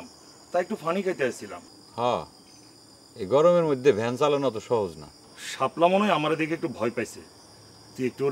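Crickets chirring in a steady, continuous high-pitched drone, heard under men's speech.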